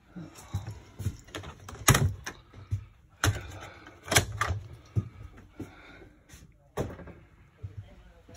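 Norcold RV refrigerator and freezer doors being opened and shut: several sharp clicks and thumps from the doors and latches, a second or more apart, over the rustle of handling.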